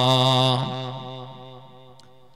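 A man's voice holding the final sung note of an Urdu verse, with a steady pitch. The note ends about half a second in and dies away in echo over the next second and a half.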